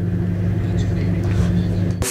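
Steady low hum and rumble on an open microphone feed, with no voice in it. It cuts off sharply as the next speaker's microphone takes over.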